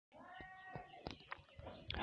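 A faint, drawn-out animal call that falls slightly in pitch, followed by a few soft taps.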